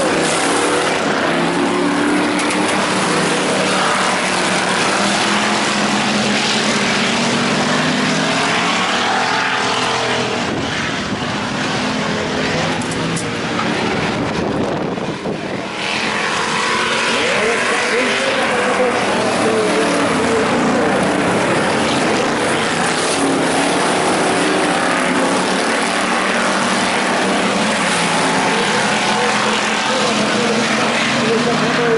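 A pack of IMCA Hobby Stock cars racing on a dirt oval, their engines running hard with pitch rising and falling through the turns. The sound eases briefly about halfway through.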